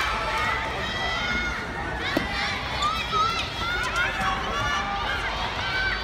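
Several girls' voices calling and shouting over one another during dodgeball play, with one sharp knock, likely the ball, about two seconds in.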